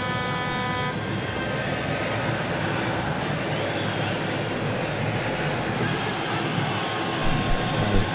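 Steady background noise of a football stadium crowd, with a loud horn holding one chord-like note that cuts off about a second in.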